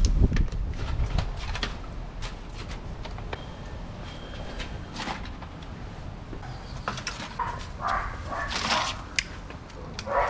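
Scattered clicks and knocks of handling, with a cluster of rustling bursts near the end: metal tongs working chicken in a cooler lined with aluminum foil.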